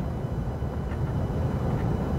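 Steady low road and engine rumble heard inside the cabin of a pickup truck cruising on a highway.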